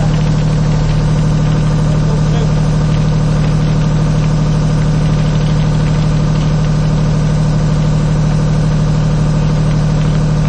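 An engine idling steadily: a low, even drone with no change in speed.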